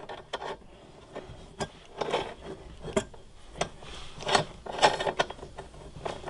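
Refrigerant line fitting nut being worked by hand onto the threads of a new A/C accumulator on a 1995 Mazda B2300: scattered small metal clicks, scrapes and rubs as the fitting is lined up.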